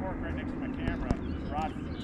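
Quiet lakeside ambience: faint, low voices with a steady low rumble underneath and a few light clicks.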